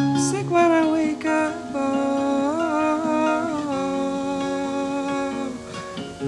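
Hollow-body electric guitar played fingerstyle under a wordless vocal melody, hummed or sung without words, with gently wavering held notes.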